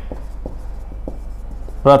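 Marker pen writing on a whiteboard: a string of faint, short strokes as words are written, over a steady low hum.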